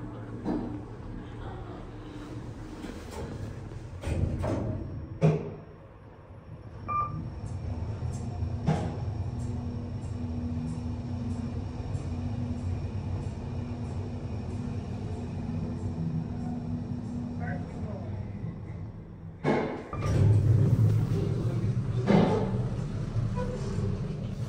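Kone EcoSpace machine-room-less traction elevator in use, heard from inside the car. The car doors close and latch with a sharp click. The car then rides with a steady low hum and faint whine from the hoist drive, stops, and the doors slide open near the end, letting in louder hallway noise.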